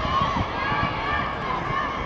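Spectators shouting cheers during a sprint race in high-pitched voices, with low thuds beneath, several a second.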